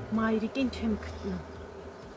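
Honeybees buzzing as a low, steady hum around a frame lifted out of the hive, with a woman's short spoken word over it during the first second and a half.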